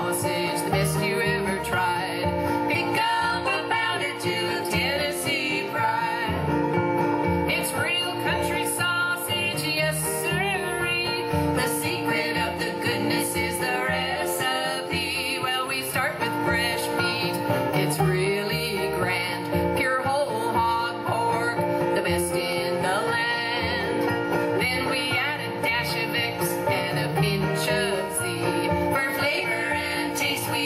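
A live bluegrass band playing and singing. Women sing in harmony over strummed acoustic guitar and a plucked upright bass.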